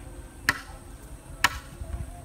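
A tool striking bamboo: two sharp, ringing blows about a second apart, part of a steady run of strokes as bamboo poles are worked.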